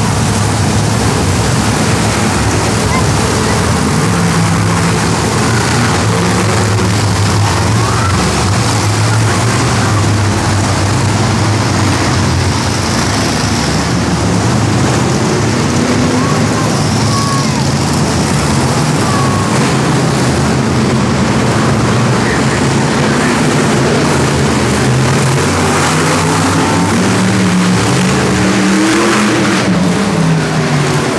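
Big engines running loud and steady, their pitch rising and falling as they rev, over a constant din of crowd voices echoing in a stadium.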